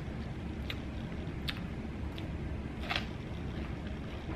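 Biting and chewing a whipped-cream-topped strawberry: a few soft, short wet mouth clicks over a steady low background hum, the clearest about three seconds in.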